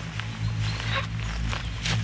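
A low, steady drone from the film's score, with dry fallen leaves rustling and crunching as a child gets up from the ground.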